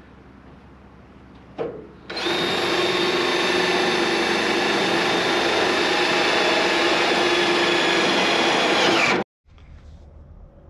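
Cordless drill running steadily for about seven seconds, driving a screw into aluminum diamond plate, its pitch dipping slightly just before it cuts off suddenly.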